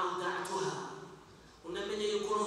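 A man speaking; his voice trails off about a second in and starts again after a short pause.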